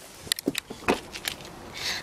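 A few light clicks and knocks, spaced irregularly, from handling around an open car rear door as someone reaches into the back seat.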